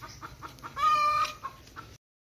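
Domestic hen cackling: faint short clucks, then one long drawn-out call about a second in. It is the call a hen gives when she may just have laid an egg.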